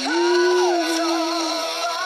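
Singing over a karaoke backing track: a voice holds one long note for about a second and a half.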